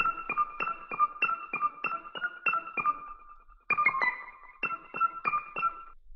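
Keys patch from the Stacks sample library for Kontakt, playing a run of short, high, piano-like notes at about three a second, with a brief pause about three and a half seconds in.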